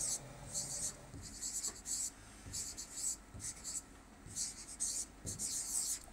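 A pen writing on an interactive touchscreen display: a quick series of short, scratchy strokes with brief gaps between them as words are handwritten.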